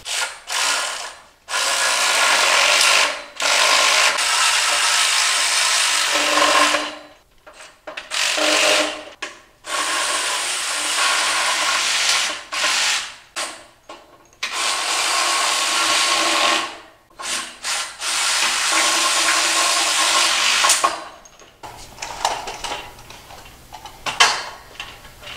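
Cordless drill-driver run in about eight bursts of one to three seconds each, with short pauses between them, driving the bolts that fasten the cross extrusions of an aluminium-extrusion CNC router frame. The runs stop shortly before the end.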